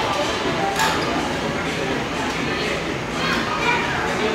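Background chatter of many diners in a large restaurant dining room, no single voice standing out, with a couple of brief clicks about a second in and after three seconds.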